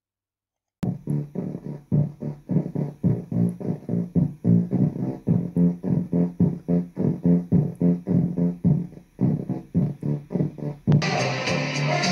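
Music played through a speaker driven by a breadboard op-amp low-pass filter built as a subwoofer: a quick run of short low notes with the treble cut away, so only the bass and lower middle come through. It starts about a second in; near the end it jumps suddenly to full-range music with bright highs.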